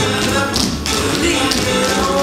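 Metal-tipped tap shoes of a troupe of dancers striking a wooden stage floor in a quick run of taps, over recorded band music.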